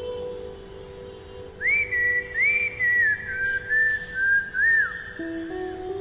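A tune whistled in short gliding phrases, about one and a half seconds in until about a second before the end, over a music track of slow, sustained low notes that change in steps.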